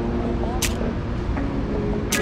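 City street ambience: a steady low rumble of traffic with snatches of passers-by's voices, and one sharp click about two-thirds of a second in.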